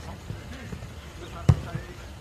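A single sharp thud of a football being kicked, about one and a half seconds in.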